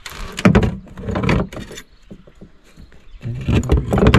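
Knocks and clatter of fishing gear against a small boat's hull as a hooked fishing line is hauled in and coiled. A cluster of knocks comes in the first second and a half, then a quieter gap, then more knocks near the end.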